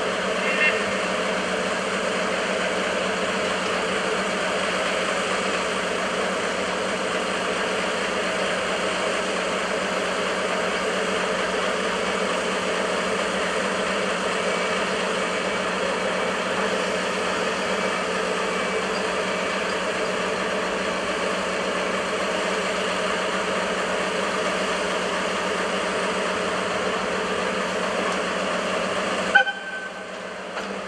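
Steady drone of an idling engine with several held tones, unchanging throughout, with a brief high toot about a second in. A sharp click just before the end, where the sound drops away.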